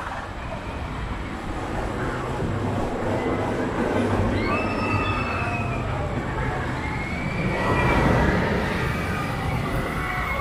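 A roller coaster train rolling on steel track, a low rumble that grows louder as it approaches, with thin high squeals over it from about the middle on.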